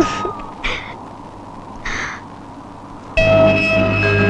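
A crow cawing three times in short calls, then film-score music with sustained held chords comes in about three seconds in.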